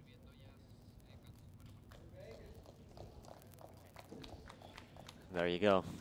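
Quiet outdoor court ambience with faint scattered clicks and distant voices. A man's commentary starts near the end.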